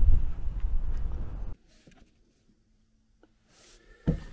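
Wind noise buffeting the microphone, a low rumble-like hiss, which cuts off abruptly about a second and a half in, leaving near silence.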